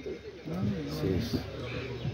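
People talking nearby, several voices mixing into background chatter.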